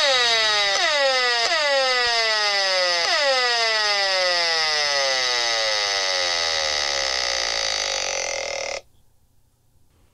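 Audio output of an HF35C RF analyzer held near a smart meter, turning the meter's pulsed microwave transmissions into sound. It is a loud tone that slides down in pitch, restarting high about four times in the first three seconds, then falls slowly and cuts off suddenly about nine seconds in.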